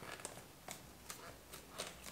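Faint small crinkles and clicks from a hair-dye cream tube being squeezed into the neck of a plastic applicator bottle of developer, about half a dozen short ticks spread through the moment.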